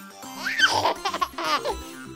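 Backing music of a children's song, with a child giggling for about a second, starting about half a second in.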